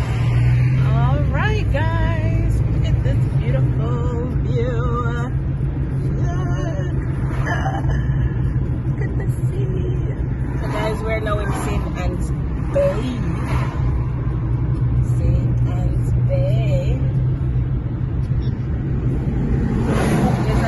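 Steady road and engine noise inside a moving car's cabin, with a song carrying a wavering singing voice playing over it.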